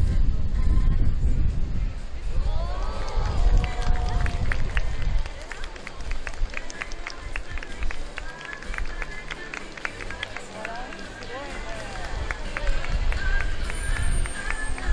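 Music and a voice playing over the stadium loudspeakers, with wind rumbling on the microphone for about the first five seconds.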